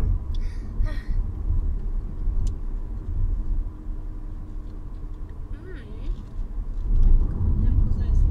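Low, steady rumble of a car on the move, heard from inside the cabin, growing louder near the end.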